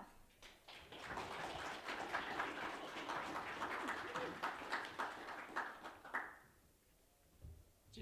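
Audience applauding, a dense patter of many hands clapping that dies away about six seconds in.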